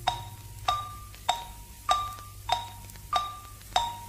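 Radio time signal counting down to the hour: seven short, chime-like pips about 0.6 s apart, alternating between a higher and a lower tone.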